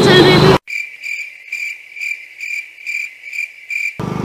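A loud voice cuts off abruptly about half a second in. A cricket-chirping sound effect follows over otherwise silent audio, chirping about three times a second: the comic cue for an awkward silence.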